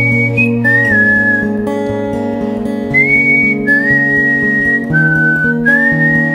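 A whistled melody of long held notes, several of them sliding up into pitch, over acoustic guitar chords played live.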